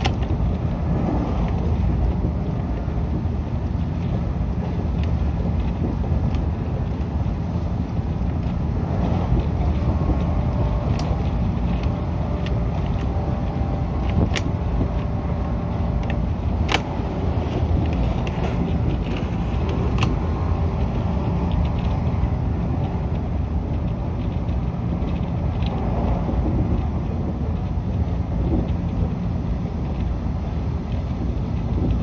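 Cabin running noise of a JR 113 series electric train at speed: a steady low rumble of wheels on rail and motors, with a few sharp clicks in the middle stretch.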